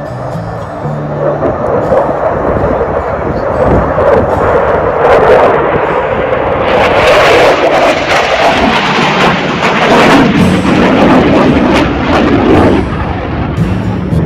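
Fighter jet's engine noise as it flies a display overhead. It builds over a couple of seconds, stays loud and crackling through the middle, and fades near the end.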